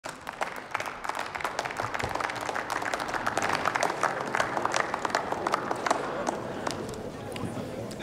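Scattered applause from parliament members: many separate hand claps that thin out near the end.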